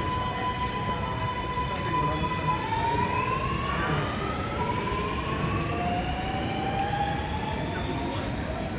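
Alstom Metropolis metro train pulling away, its traction motors giving a whine that holds one pitch for the first couple of seconds, then rises in pitch several times over as the train gathers speed, over the rumble of the train.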